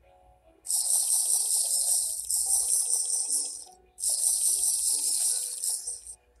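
Minecraft's potion-drinking sound effect, a rapid liquid gulping noise, played in two long stretches with a brief break between them, over faint background music.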